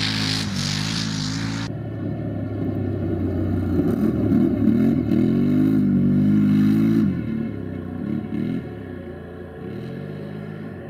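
Can-Am Renegade 1000 quad's V-twin engine revving hard under racing load, its pitch rising and falling as the rider accelerates and backs off. The tone changes abruptly about two seconds in and again about seven seconds in.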